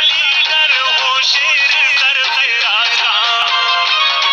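A song: a sung melody that bends and wavers in pitch over a repeating instrumental backing, played at a steady, loud level.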